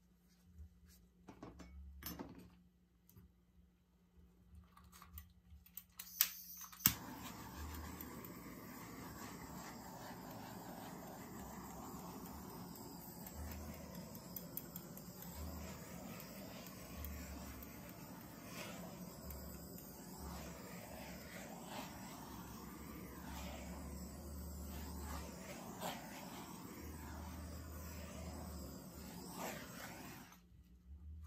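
Handheld torch clicking twice as it is lit about six seconds in, then its flame hissing steadily as it is passed over the wet acrylic pour to bring cells up to the surface, cutting off at the very end.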